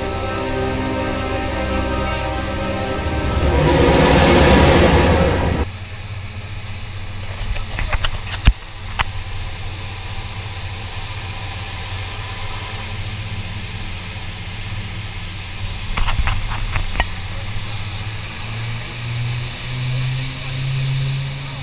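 Music with a beat swells loudly and cuts off about six seconds in. After it comes the steady drone of the Short SC.7 Skyvan's twin turboprop engines, heard inside the cabin, with a few clicks and knocks. The engine note steps up near the end.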